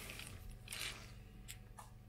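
Faint handling sounds: a brief rustle about three-quarters of a second in and a couple of light clicks later, as gloved hands move a small plastic bag of solder wire and lay a soldering gun down on paper, over a low steady hum.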